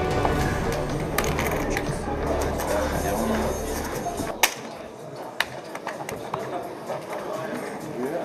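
Background music with a steady low bass that cuts off about four seconds in, over sharp, scattered clicks of poker chips being handled and stacked at the table, with a few louder clacks after the music stops.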